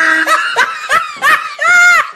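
A person laughing in a run of short, arched 'ha' bursts, about three a second, ending on a longer drawn-out laugh near the end.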